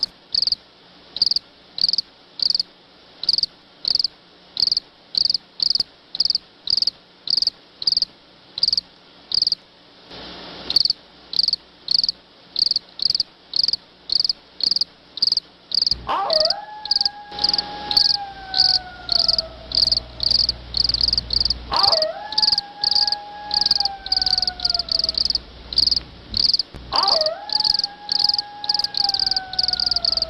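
Crickets chirping steadily, about two high chirps a second, as night ambience on a film soundtrack. From about halfway in, three long wailing calls, each jumping up and then sliding slowly down for a few seconds, sound over the chirping with a low hum beneath.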